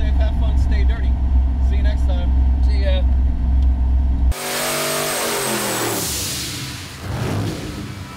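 Low engine and road drone inside the cabin of a 1979 Ford Fairmont with a small-block Ford, under laughter and voices. About four seconds in it cuts off suddenly to a hissing sound with several tones falling in pitch, which fades out.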